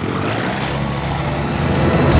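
REVO ultralight trike's engine and propeller running steadily as it flies low and fast past the camera.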